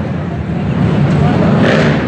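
Racing quad (ATV) engines running on an indoor dirt motocross track.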